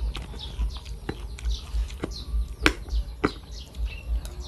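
Small birds chirping in quick succession, several short falling chirps a second. Over them come a few sharp clicks of a metal spoon against a bowl as someone eats, the loudest about two and a half seconds in.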